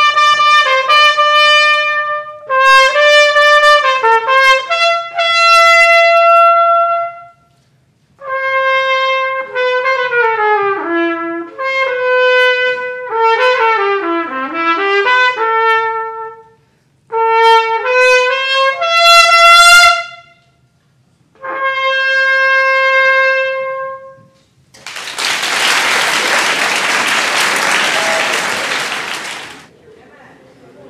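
Solo trumpet playing a melody in phrases separated by short pauses, ending on a held note. A few seconds of audience applause follow near the end.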